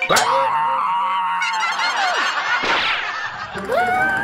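Cartoon sound effects: a high, held pitched tone for about a second and a half, then a short falling glide, then a rising tone near the end.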